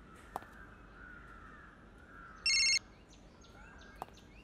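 A mobile phone ringing: one short electronic ring-tone burst about two and a half seconds in, signalling an incoming call. A faint click comes near the start.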